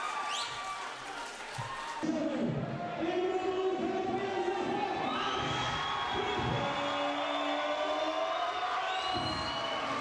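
Crowd cheering and whooping with music playing, starting suddenly about two seconds in and holding steady. It greets the winner of a fight.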